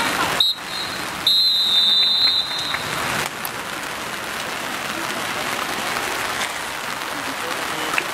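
Referee's whistle: a short blast, then after a pause a long blast of about a second and a half, the final whistle of the match, over steady outdoor crowd noise.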